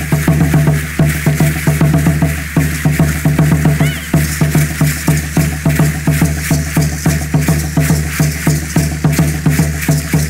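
Aztec dance drumming: a steady, fast drum beat with dry rattling from the dancers' seed-pod ankle rattles.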